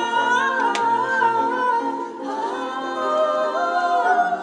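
A female lead singer and a group of backing vocalists singing live in harmony, holding long notes that glide from one pitch to the next, with almost no instrumental accompaniment.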